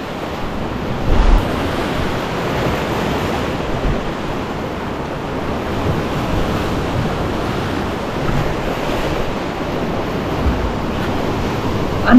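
Sea surf breaking and washing over shoreline rocks: a steady rush of water, with a louder low buffet about a second in.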